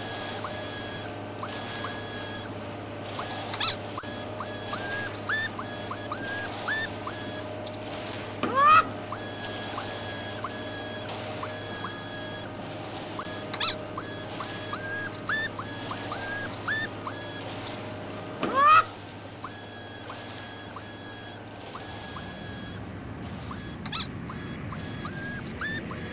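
Sound effects: a steady low hum with many short chirps and beeps over it, and two loud rising whoops about ten seconds apart. The hum stops about four seconds before the end.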